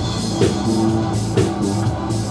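A live band playing instrumental music: a drum kit with a strong hit about once a second over sustained electric bass notes.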